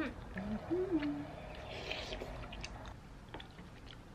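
A person eating rice cake soup makes two or three short closed-mouth "mm" hums in the first second, then chews softly. A few faint clicks of the spoon against the ceramic bowl come later.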